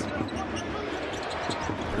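A basketball being dribbled on a hardwood court, a few short bounces, over steady arena crowd noise.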